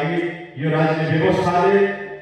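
A man's voice amplified through a microphone, in a drawn-out, chant-like delivery that holds long, level pitches, with a short break about half a second in.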